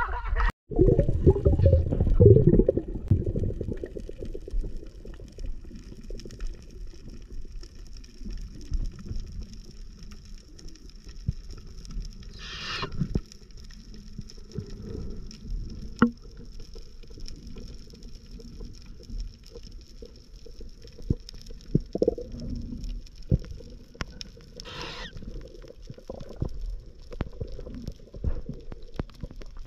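Underwater sound through an action-camera housing: a steady muffled low rumble with scattered sharp clicks and two brief hisses, about 13 and 25 seconds in. It is louder and choppier for the first few seconds.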